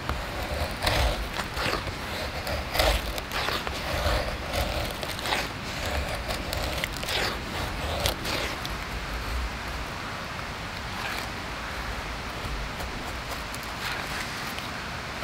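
Knife blade shaving thin curls down a dry wooden stick to make a feather stick: about a dozen short scraping strokes, roughly one a second, which stop about eight seconds in, leaving a steady faint hiss.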